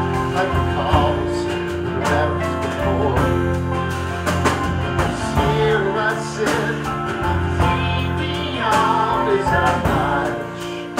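A live acoustic country-folk band playing: strummed acoustic guitars, upright bass and drums, with a man singing lead and a woman's voice joining in.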